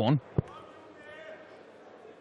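A steel-tipped dart striking a bristle dartboard once, a single sharp thud about half a second in.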